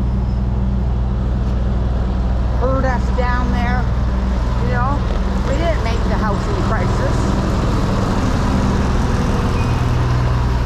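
Steady low hum of a parked refrigerated box truck running at idle, loud and close. Indistinct voices come and go in the middle of it.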